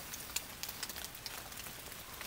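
Light rain: a faint steady hiss with scattered sharp drips ticking close by.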